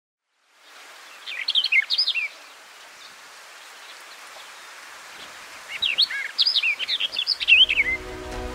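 Songbird singing: two runs of quick, swooping chirps, one about a second in and a longer one from about six seconds. Under them is a steady outdoor hiss.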